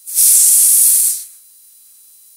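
A loud burst of hiss, about a second long, that starts suddenly and then fades out.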